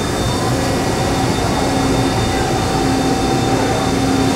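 Steady machinery hum with a few constant tones running through it, from powered-up equipment and ventilation on a factory floor.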